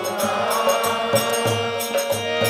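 Harmonium holding a steady chord in an instrumental gap between sung lines of a devotional bhajan, with a drum keeping a steady beat of about two to three strokes a second underneath.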